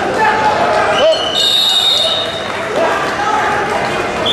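A referee's whistle blown in one long, high blast starting about a second in, marking the end of the bout's time. Crowd voices and shouting echo around a large hall.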